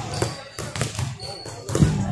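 Basketball bouncing a few times on a hardwood gym floor, with voices in the hall.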